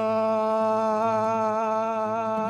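An older man singing one long held note with a slight waver in pitch, over a low steady drone tone.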